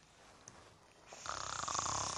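A person snoring: after a moment of near silence, one long rasping snore begins about halfway through.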